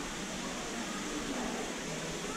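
Steady, even hiss of background noise.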